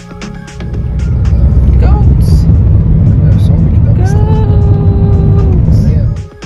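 Loud low rumble of a car in motion, heard from inside the cabin on a narrow road. A person's voice rises briefly about two seconds in, then holds one long pitched call from about four seconds in to near the end.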